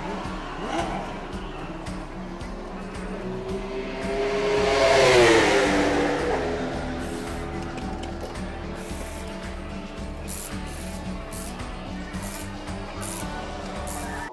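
A race car drives past close by in the pit lane about four seconds in, loudest around five seconds, its pitch falling as it goes by, over a steady engine hum. Near the end come several short bursts typical of a pneumatic wheel gun working on the wheels during a tyre change.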